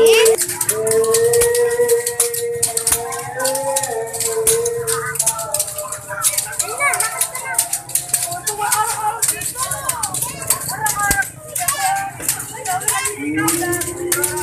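Flagellants' whips of bamboo sticks rattling against bare backs in rapid, repeated clicking strokes, over a crowd's voices.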